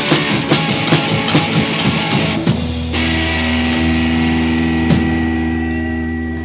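Live punk rock band on an old bootleg tape recording, with electric guitars and a drum kit, playing the end of a song. The drums pound steadily about two and a half times a second, then stop about two and a half seconds in while the final guitar chord rings on. There is one more hit near the end as the chord slowly fades.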